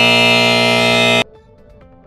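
A loud, harsh wrong-answer buzzer sound effect, held steady, then cut off abruptly just over a second in. Soft background music with scattered notes follows it.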